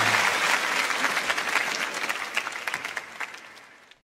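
Concert audience applauding, a dense patter of many hands clapping, just as the band's last held note cuts off. The applause fades out toward the end.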